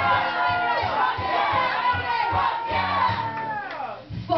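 Live acoustic-guitar song at full volume: guitar strumming steadily under a woman singing into a microphone, with several voices shouting and whooping along. A held high note slides down just before the end.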